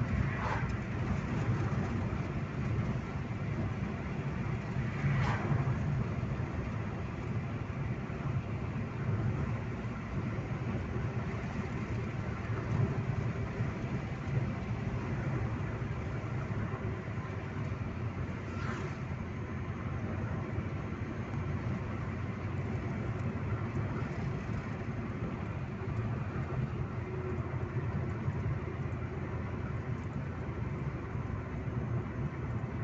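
Steady engine and road rumble of a car heard from inside the cabin while driving, with brief swells of noise about 5 and 19 seconds in.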